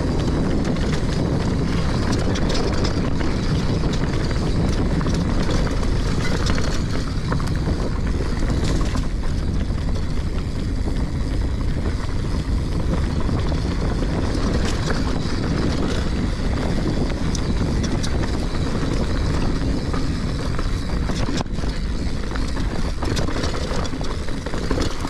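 Mountain bike rolling along a dirt forest singletrack: a steady low rumble of tyres on the trail and wind on the rider-mounted camera's microphone, with occasional clicks and rattles from the bike.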